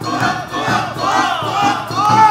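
A group of Awa odori dancers shouting chant calls together, many voices rising and falling in pitch, over the band's steady drum beat.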